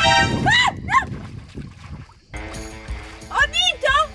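Excited voice exclamations over background music, cut off by a brief near-silent gap about two seconds in, then a held musical chord with more voiced calls near the end.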